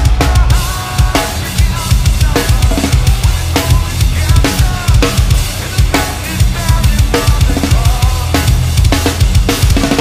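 Heavy metal drumming on a full drum kit: rapid, driving bass drum and snare hits over a dense band mix.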